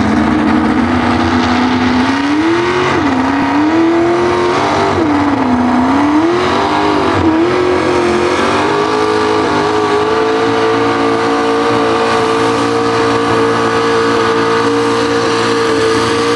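Supercharged engine of a Ford pickup pulling truck at full throttle, dragging a pull sled. The revs rise and dip several times in the first half, then hold steady and high.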